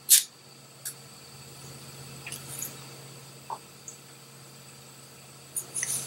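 A handheld lighter is struck once at the start, then a faint steady hiss while it burns, with a few small handling clicks near the end, over a low steady hum.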